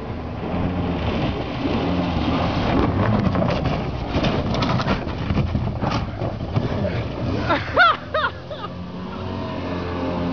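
Jet boat engine and water jet running hard as the 16-foot Eagle Sportjet powers along a shallow river, a loud steady drone that eases off a little near the end.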